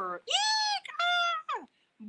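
A woman's voice giving two high-pitched squealing cries and then a short squeak that falls in pitch. These are mock screeches of frightened jungle animals in a dramatic read-aloud.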